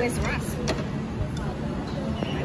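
Outdoor street-side ambience: a steady low rumble of traffic under background voices, with one light clack of tableware less than a second in.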